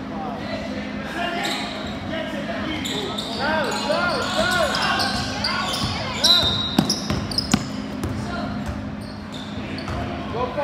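A basketball being dribbled on a modular plastic tile court, with sharp bounces loudest a little after six seconds in, over a steady hum and background voices in a large hall. Short, chirpy shoe squeaks come a few seconds in as players move.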